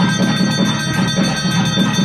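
Temple ritual music during a lamp offering: a brass hand bell rung without pause, its steady ringing tones over rhythmic percussion beating about four times a second.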